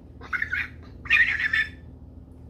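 A person's vocal imitation of a heron's call: two high-pitched calls, the second longer and louder, about a second apart.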